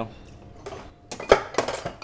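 Metal bar tools clinking against a milk jug as a measured spirit is tipped in from a jigger: a short cluster of sharp clicks and knocks in the second half, the loudest a little over a second in.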